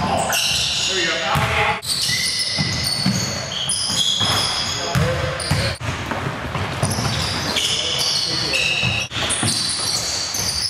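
Basketball game sounds on a hardwood gym court: the ball bouncing in repeated thuds, sneakers squeaking in short high-pitched chirps, and players' voices, all with the echo of a large hall. The sound cuts off abruptly a few times.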